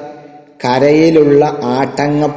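A man chanting a line of Arabic verse in a slow, drawn-out melodic recitation, starting a little over half a second in after a short pause.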